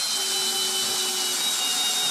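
Cordless drill running steadily, driving a long screw through carpet and subfloor into a floor joist, its motor whine sagging slightly in pitch under load.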